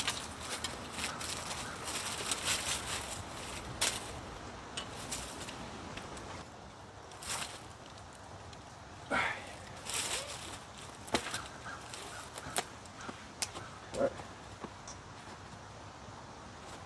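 Gear handling while a saddle hunting platform and its rope tether are rigged on a tree trunk: scattered sharp metal clicks and clinks over rustling of clothing, rope and dry leaves, with a few short swells of noise.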